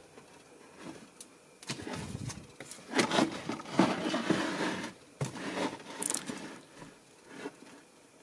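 A clear plastic storage tub being lifted and shifted on a pantry shelf, making irregular scrapes, knocks and rustles against the shelf and the packets around it.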